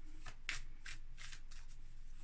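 A tarot deck being shuffled by hand: a run of short, soft card strokes, about two to three a second.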